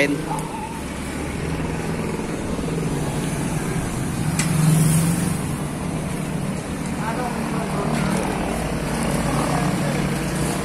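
A motor vehicle's engine running nearby on the street, a steady hum that grows louder about halfway through and then eases off.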